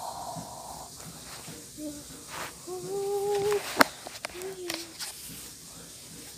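A child's voice humming softly in a few short, fairly steady notes, the longest about a second, with a sharp click just before the middle of the humming ends.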